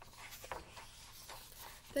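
Pages of a hardcover picture book being turned and handled: paper rustling and sliding, with a soft knock about half a second in.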